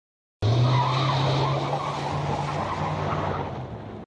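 Tyre-squeal sound effect for a spinning-wheel logo: a loud skid that starts suddenly, with a steady low hum beneath, then fades slightly and cuts off abruptly.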